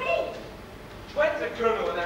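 Speech: a man speaking stage dialogue in two short phrases, the second starting a little past halfway.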